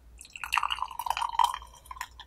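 Tea poured from a clay teapot through a strainer into a glass pitcher: a stream of liquid splashing and ringing in the glass for about a second and a half, thinning to a few last drips near the end.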